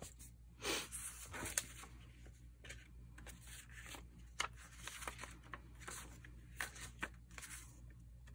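Paper and card being handled: a stack of notebook pages and its cover rustling and shuffling, with a few light, sharp taps and clicks scattered through.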